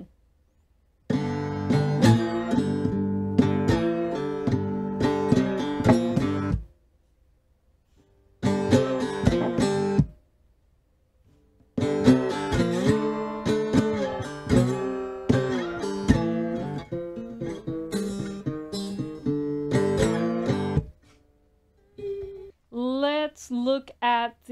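Fretless three-string cigar box guitar played with a slide, working through a 12-bar blues pattern in three phrases with short breaks between them. A woman starts speaking near the end.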